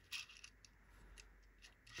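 Near silence, with a few faint small clicks from a diecast toy car being handled and turned on a tabletop.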